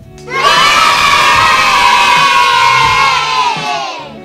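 A group of children cheering together, a celebratory 'yay'. It swells up just after the start, holds loud for about three seconds and fades away near the end.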